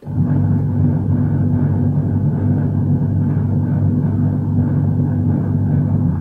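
Washing machine running with a steady, loud low hum and drone, cutting in suddenly.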